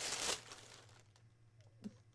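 Product packaging being handled: a short rustle in the first half-second, then faint scattered crinkles and ticks.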